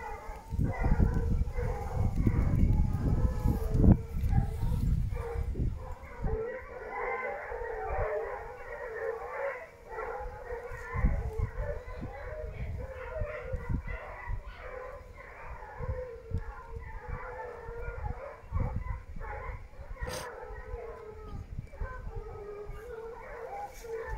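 A pack of hunting hounds baying in many overlapping voices, giving tongue on a wild boar trail. Heavy low rumble and thumps of wind and handling on the microphone in the first few seconds.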